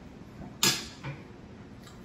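A metal fork set down on a ceramic plate: one sharp clink a little over half a second in, followed by a couple of faint ticks.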